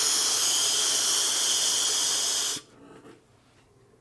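Steady airy hiss of a direct-lung drag through a sub-ohm vape tank, the Avatar Mesh Nano with a 0.3 ohm mesh coil at 60 watts and its airflow turned down a little. The hiss stops abruptly about two and a half seconds in as the drag ends.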